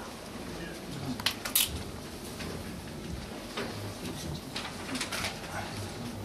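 Sheets of paper rustling and crinkling as the pages of a document are turned and handled at a table. There are short crisp rustles, the sharpest pair about a second and a half in and several more in the second half.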